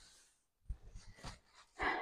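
Mostly quiet, with one soft tap and faint rustling about halfway through, then a woman's short in-breath near the end.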